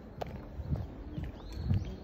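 Footsteps of shoes walking on asphalt at a steady pace, the heavier steps about a second apart.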